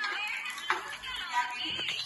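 Several people's voices talking and calling out together in a small room, with a single sharp tap about a third of the way in.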